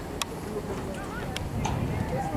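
Indistinct voices in the background, with a few short sharp clicks.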